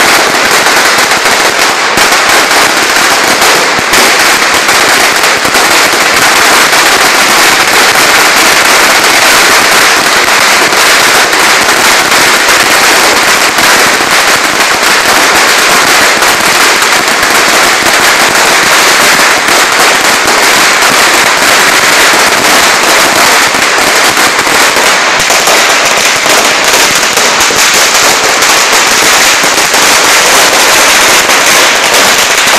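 Firecrackers going off in a dense, unbroken stream of many small loud bangs in quick succession, with no pause.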